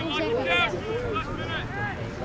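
Speech: a high-pitched voice talking, with no words made out, over a steady low rumble.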